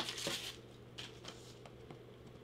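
Faint handling noise of small blind boxes and their packaging: a few light taps and rustles, mostly in the first second, over a low steady hum.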